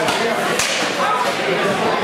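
A single sharp crack of rapier blades striking about half a second in, over the chatter of the surrounding crowd.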